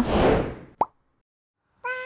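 Video-editing transition sound effects: a whooshing sweep that fades out, then a short rising plop just under a second in. After about a second of silence, a brief steady electronic tone starts near the end.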